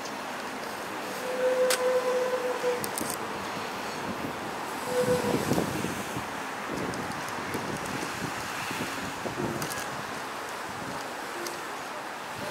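Wind blowing across the microphone: a steady hiss with gusts. A flat held tone sounds about a second in and again, more briefly, about five seconds in.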